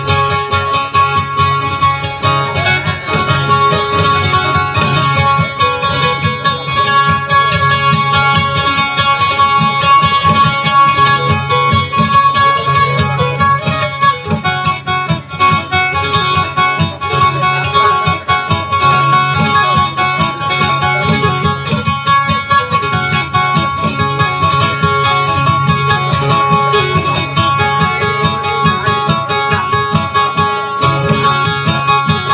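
Acoustic guitar played solo, steady plucked accompaniment for a Visayan dayunday song, with a repeating low bass pattern under sustained higher notes.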